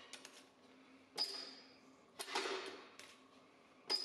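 Hand-lever metal stretcher gripping and stretching a strip of aluminium: three faint, sharp metallic clacks about a second apart, each with a brief ring.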